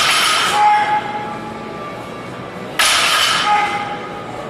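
Barbell loaded with cast-iron weight plates set down on the gym floor twice, about three seconds apart, each a sudden metallic clatter that rings briefly afterwards.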